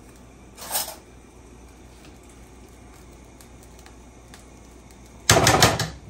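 A metal spoon rattling and scraping against a stainless steel saucepan in a quick cluster of sharp clicks lasting about half a second near the end, knocking coconut oil off into the pan. A brief soft scrape comes about a second in.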